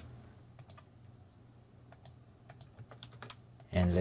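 Computer keyboard typing: a few faint, scattered key taps.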